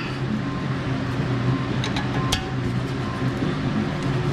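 Two sharp metallic clicks about two seconds in, a wrench clinking against a brake caliper bracket bolt, over a steady low hum and faint background music.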